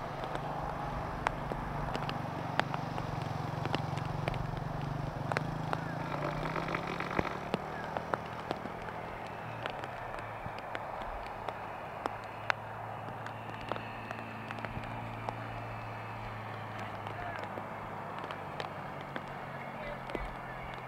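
Outdoor ambience with a steady low engine hum that shifts in pitch about eight seconds in, scattered faint ticks, and faint distant voices.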